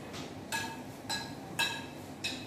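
A metal spoon clinking against a ceramic plate while someone eats, three short ringing clinks about half a second apart.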